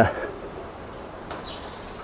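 A man's brief 'uh', then a quiet outdoor background with faint bird calls.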